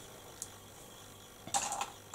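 Quiet room with small handling noises: a faint click about half a second in, then a short rustle near the end.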